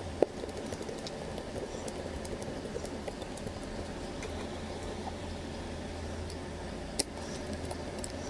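Small clicks and taps of a precision screwdriver and fingertips working on a smartphone's plastic midframe, with two sharper clicks, one just after the start and one near the end, over a steady low hum.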